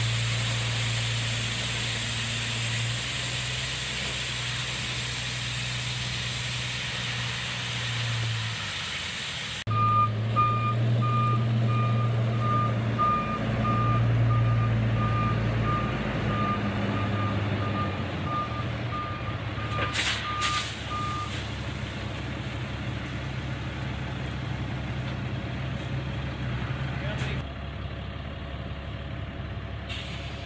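Dump truck's diesel engine running steadily while gravel pours off the raised bed with a rushing hiss. After a cut, a backup alarm beeps at an even pace, a little under two beeps a second, for about eleven seconds over the engine, and near its end come two short sharp hisses.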